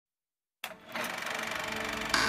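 Silence for about half a second, then a short click and a steady, rapidly pulsing mechanical-sounding hum: the sound effect of an animated opening logo, running on into music.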